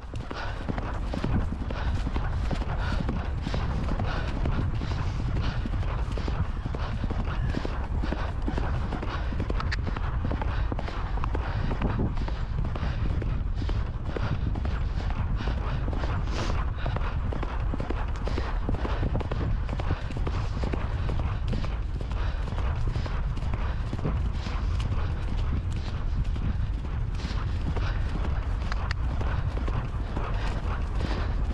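Horse cantering on a grass track: a steady run of hoofbeats over a low rumble, heard from the saddle.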